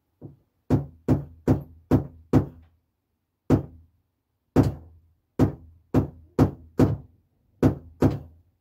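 About a dozen sharp wooden knocks on a model railway baseboard while a model signal is being fitted, a quick run of six in the first two and a half seconds, then seven more spaced out.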